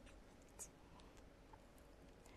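Near silence: room tone with a few faint, light clicks of small plastic counters handled between the fingers, about half a second and a second in.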